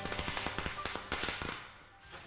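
A string of firecrackers going off in a rapid, dense crackle of sharp bangs, thinning and dying away near the end.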